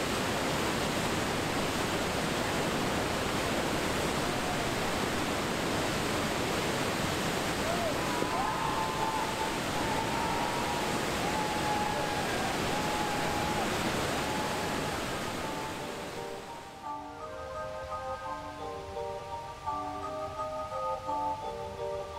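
Steady roar of whitewater rushing through a large river rapid and its standing wave. About sixteen seconds in, the water sound fades out and background music with a simple repeating melody takes over.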